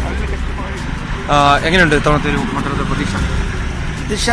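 Low, steady rumble of road traffic at a street roadside, swelling in the first second and again a little after three seconds. A voice speaks briefly about a second in.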